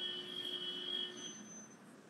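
Faint, thin steady whine of a few high tones, fading out over the first second and a half, over low hiss in a pause of speech heard through a video-call audio feed.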